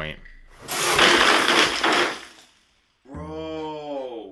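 A tower of LEGO spring-loaded shooters firing together: a dense clatter of plastic missiles launching and landing for about two seconds. After a short break comes a man's long, falling "broooo".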